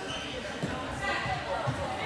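Floorball game sound in a sports hall: indistinct voices of players and spectators calling out, with a few short dull thuds on the court floor, echoing in the hall.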